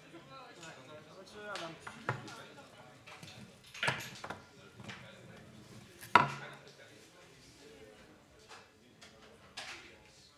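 Low murmur of people talking in a room, broken by a few sharp knocks and clicks. The loudest comes about six seconds in.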